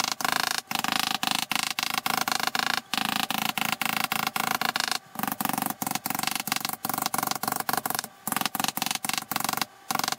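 Hammer tapping rapidly on a zinc sheet over a wooden table top, a quick steady run of metallic taps, many a second, broken by brief pauses about five seconds and eight seconds in.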